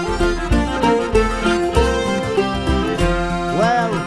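Instrumental passage of an Irish folk-band song with no singing: acoustic plucked strings and a melody line over a pulsing bass, with a short rising-and-falling slide near the end.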